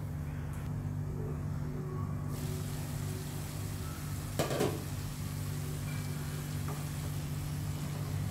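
Small marinated chicken pieces cooking in a wok with a low, steady sizzle over a constant low hum. A brief louder crackle comes about four and a half seconds in.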